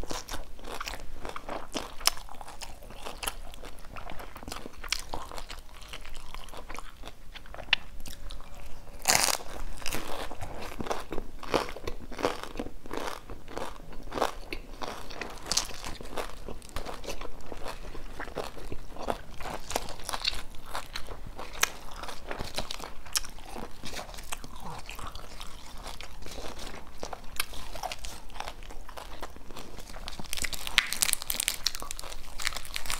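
Crunching and chewing of crisp deep-fried Vietnamese spring rolls (chả giò) wrapped in lettuce and herbs, picked up close on a clip-on microphone: a dense, continuous run of sharp crackly crunches with each bite and chew.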